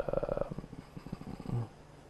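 A man's voice trailing off into a low, creaky hesitation sound, rough and pulsing, that fades out after about a second and a half.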